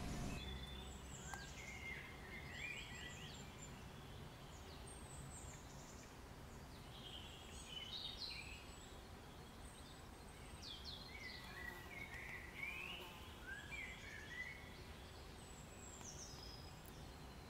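Faint birdsong: several short, chirping phrases at irregular intervals over low, steady background noise.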